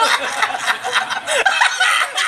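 A person laughing in quick, repeated bursts that rise and fall in pitch.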